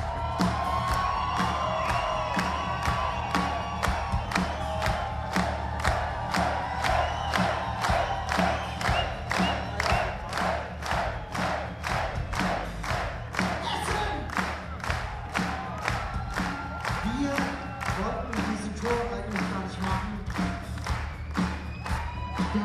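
Live rock concert: a large crowd cheering and singing along over a steady beat of nearly three hits a second and a sustained low bass note.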